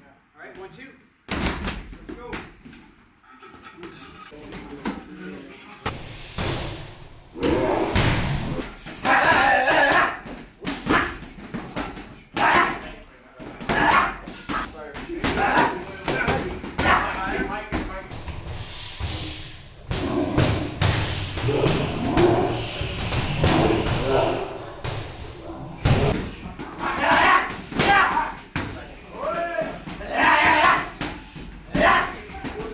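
Gloved punches striking hand-held striking pads in repeated quick combinations, each hit a sharp slap or thud, with short pauses between the flurries.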